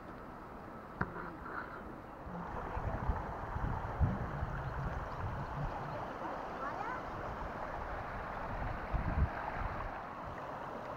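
Shallow water flowing steadily, louder from a few seconds in, with irregular low thumps on the microphone and a single click about a second in.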